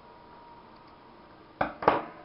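Two sharp clicks from a pair of scissors in quick succession near the end, as the blades work on the bracelet's loose twine ends.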